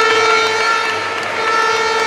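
A steady, horn-like held tone from the crowd sounds over general crowd noise, pausing briefly and carrying on.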